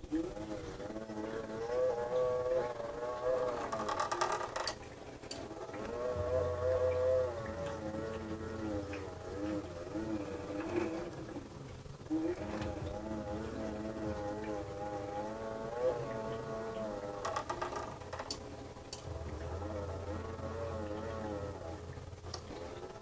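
3D printer's Y-axis belt and pulleys whirring as the bed is pushed back and forth by hand. The pitch rises and falls with each push, the sign of the belt being run to check that it tracks centred on the idler pulley.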